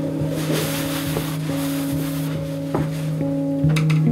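Background music of sustained low notes held steady, with a rushing, wind-like noise through the first two seconds and a couple of light clicks near the end.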